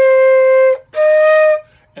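Concert flute playing two held notes, a C and then the E flat a little higher, each lasting under a second with a short gap between them. This is the awkward fingering switch from C to E flat.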